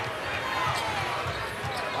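A basketball being dribbled on the court, repeated low bounces, over faint voices from the arena crowd.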